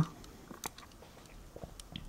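Faint scattered clicks and light rubbing as fingers handle and turn a small 1:64-scale metal diecast stock car, with one sharper click a little over half a second in and a few smaller ones near the end.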